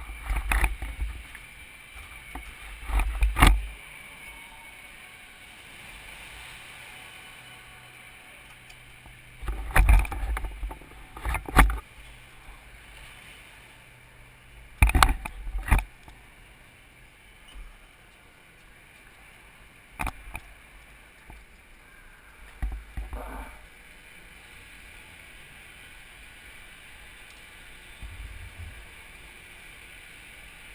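Go-kart driving, heard from an onboard camera: a steady faint whine runs underneath, and several short, loud knocks and rumbles from the kart's chassis break in at irregular moments.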